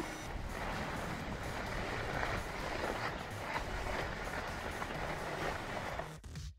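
Steady rushing noise of wind on an action camera's microphone mixed with skis sliding over packed, tracked-up snow during a slow run down the slope.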